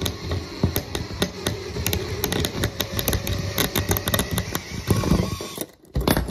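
A drill running in reverse with a left-hand drill bit biting into a stripped screw in a metal channel: a steady grinding chatter of fine clicks as the bit engages and backs the screw out. It stops suddenly near the end.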